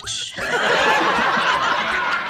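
Loud, hearty laughter from men, starting about a third of a second in after a brief lull and carrying on unbroken.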